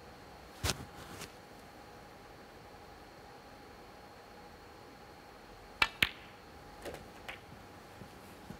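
Snooker shot: a cue tip strikes the cue ball, then the cue ball cracks into an object ball a moment later. These two sharp clicks come close together about six seconds in and are followed by a few lighter ball knocks. A single sharp click of balls also sounds just under a second in.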